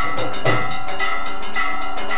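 Temple bells ringing on without a break over a drum beaten about twice a second, the accompaniment to a Hindu aarti.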